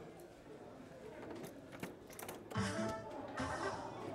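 Electronic soft-tip dart machine sounds over background music. A few sharp clicks come in the middle as the darts are pulled from the board, and a short electronic jingle follows as the machine changes rounds.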